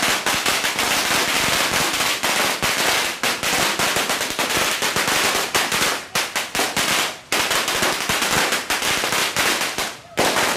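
Strings of firecrackers going off in a loud, rapid, continuous crackle of bangs, with only brief lulls.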